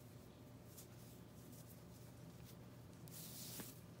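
Near silence with a steady low hum, and a soft, brief rustle of thick cotton macrame cord being handled and pulled through a square knot about three seconds in.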